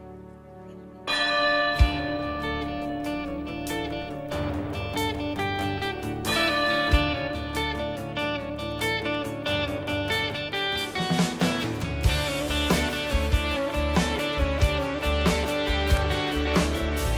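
A live worship band begins the instrumental introduction of a hymn. Keyboard and guitars come in abruptly about a second in, and a steady low beat of drums and bass joins about two-thirds of the way through.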